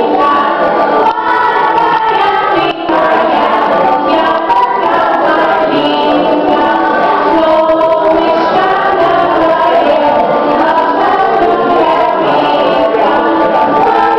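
A group of young children singing a Russian song together.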